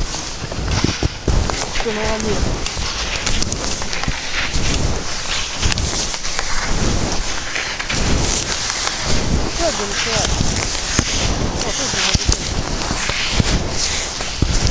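Footsteps crunching through deep, soft snow, with wind buffeting the microphone in irregular low rumbles.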